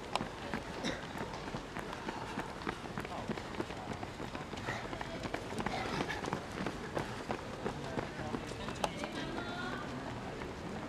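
Footfalls of a pack of distance runners on a synthetic running track, many short irregular footstep clicks as they pass close by, with faint voices in the background.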